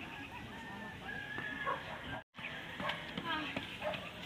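A rooster crowing: one long held call about a second in, then more calls after a brief total dropout of the sound just past halfway.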